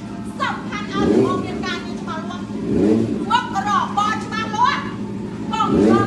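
A motorcycle engine idling steadily, with short rising revs about a second in, near three seconds and near the end, under people talking.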